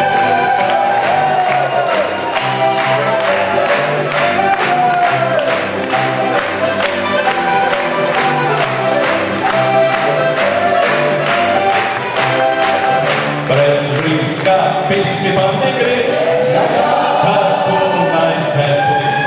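Live Slovenian folk band playing with a male vocal group singing in harmony, accompanied by diatonic button accordion and acoustic guitar over a steady oom-pah beat with alternating bass notes.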